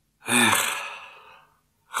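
A person's sigh: a breathy, voiced exhale that starts loud and trails off over about a second.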